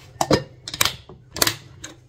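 A cover being fitted onto a bowl: four short, sharp clicks about half a second apart.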